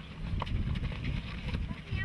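A group of young monks jostling and shuffling on dusty ground, with scuffling steps and clicks over an uneven low rumble, and faint voices.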